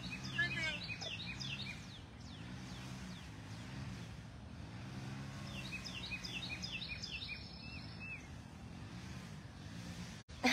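An F1 Savannah cat purring, a low rumble that swells and fades with each breath. Birds sing short descending chirps near the start and again around the middle.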